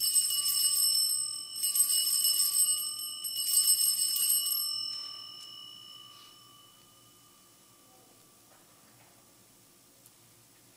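Altar bells rung in three shakes of about a second each, marking the elevation of the chalice at the consecration; the ringing dies away a couple of seconds after the third.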